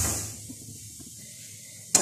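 Hiss of the gas burner under a steel saucepan of boiled milk, dying away in the first half second as the stove is turned off, leaving a low background. A single sharp click near the end.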